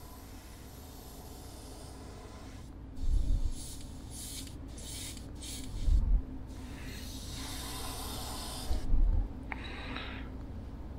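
Gravity-feed Iwata Eclipse airbrush spraying paint at turned-down pressure in short bursts that start and stop, over a steady low hum. Three dull bumps, about three, six and nine seconds in, are the loudest sounds.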